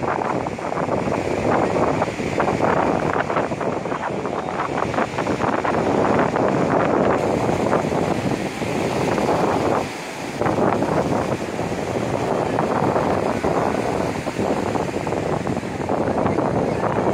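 Wind buffeting the microphone over the wash of ocean surf: a steady rush of noise that dips briefly about ten seconds in.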